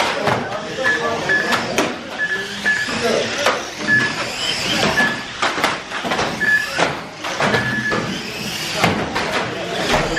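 Electric radio-controlled cars racing on a carpet track: their motors whine, rising and falling as they accelerate and brake, with repeated sharp knocks of cars hitting each other and the barriers. A string of short high beeps repeats throughout, over a murmur of voices in the hall.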